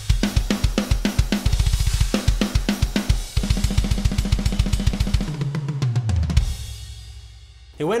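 Programmed MIDI rock/metal drum kit playing back from sampled drums: kick, snare, hi-hat and cymbals in a busy groove, with a fast run of low hits around the middle. A fill drops down the toms and ends on a last hit that rings out and fades about six seconds in.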